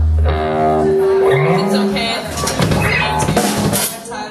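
Rock band playing live: a held electric guitar note and a low bass note sliding upward, then drums and crashing cymbals through the second half.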